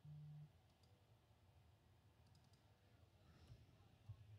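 Near silence: room tone with a few very faint clicks in the middle.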